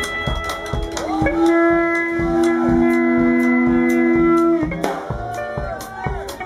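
Live rockabilly band playing an instrumental break: electric guitar lead over a steady drum beat. From about a second in until nearly five seconds, the guitar holds one long two-note chord while the drums keep time, then it moves back into quicker runs.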